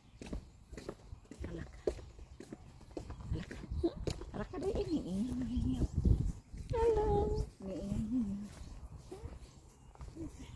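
A farm animal calling, with one long cry about seven seconds in.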